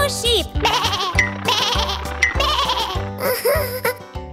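Cartoon sheep bleating twice over bouncy children's background music.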